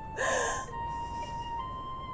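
A weeping woman's short, sharp gasping breath about a quarter second in, with a fainter breath after it, over soft flute music with long held notes.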